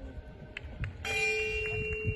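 A bell-like chime starts about a second in and rings on steadily, several pitches at once, over the low thuds of a cantering horse's hooves on sand.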